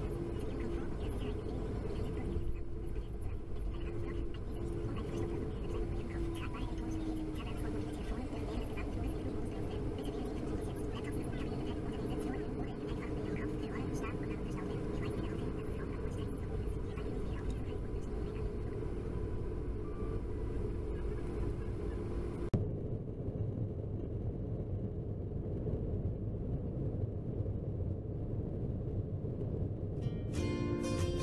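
Cabin noise of a Ryanair Boeing 737-800 taxiing: a steady low engine rumble with a steady whine that dips in pitch about seven seconds in. About two-thirds of the way through the whine stops and the sound turns duller.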